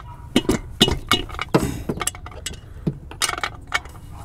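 Irregular metallic clicks and clinks of a hand tool working a 10 mm bolt on an engine's intake plenum, about a dozen short ticks of varying loudness.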